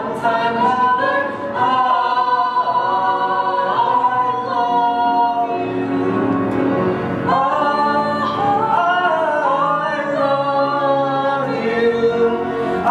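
Male and female voices singing a musical number together in harmony, with long held notes.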